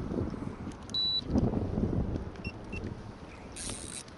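Wind buffeting the microphone on an open fishing boat, an irregular low rumble that is strongest in the middle. A brief high hiss comes near the end.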